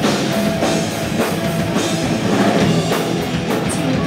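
A live rock band playing: electric guitar, bass guitar and drum kit at full volume, with a steady beat.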